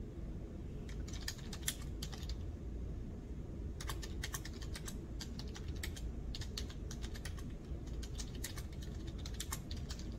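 Typing on a computer keyboard: a short run of key clicks about a second in, a pause, then steady typing from about four seconds on, over a low steady room hum.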